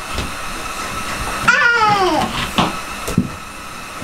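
A young child's wordless vocal sound that slides downward in pitch, about a second and a half in, followed by a couple of light knocks of plastic wire spools being set down on a plywood floor, over a steady background hum.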